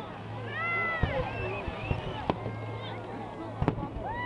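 Fireworks display: aerial shells bursting in sharp bangs, about four of them, the last two close together near the end.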